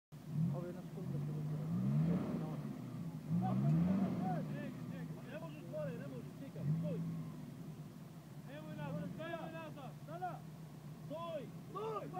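Off-road 4x4's engine revving in three short bursts, rising in pitch each time, as it pulls through mud on a tow line, then running steadily at lower revs. From about halfway, people's voices call out over the engine.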